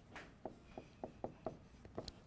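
Felt-tip dry-erase marker writing on a whiteboard, faint. One longer stroke comes first, then a run of short strokes about every quarter second.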